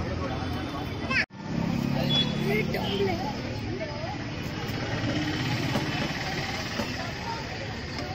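Indistinct background voices over a steady low engine-like hum, the sound cutting out abruptly for an instant a little over a second in.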